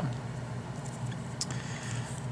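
Steady low hum of room tone, with a few faint ticks about one and a half seconds in.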